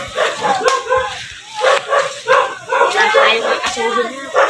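A dog barking repeatedly, mixed with people's voices.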